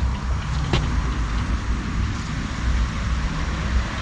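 Small shallow creek running over a sandy, stony bed: a steady, even rushing hiss, with a steady low rumble underneath and a single click under a second in.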